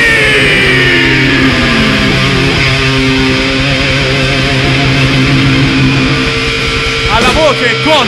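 A live heavy metal band's distorted electric guitar holds a note that slides down in pitch over the first couple of seconds, above a steady low bass note. Near the end the guitar plays fast wavering bends.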